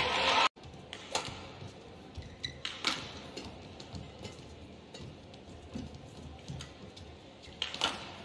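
Badminton rackets striking a shuttlecock during a rally: several sharp smacks, irregularly spaced, about a second in, around three seconds in, and again near the end.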